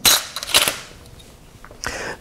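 A marker being handled: a quick run of sharp plastic clicks in the first second, then quiet.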